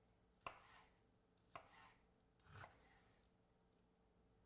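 Chef's knife slicing through cooked chicken breast on a wooden cutting board, the blade knocking on the board three times, about a second apart.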